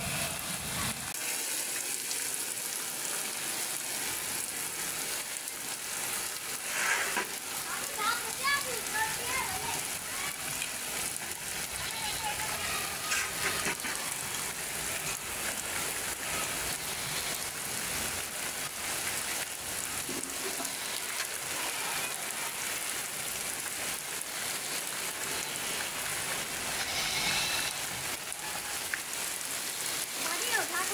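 Heavy rain falling steadily, an even hiss throughout.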